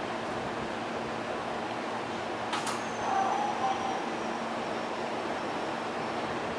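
Steady hum and whir of a stopped JR E353 series electric train's onboard equipment at a platform. About two and a half seconds in there is one sharp click, followed by a brief faint tone.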